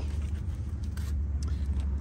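Steady low hum of a running engine, with a couple of faint clicks about a second in.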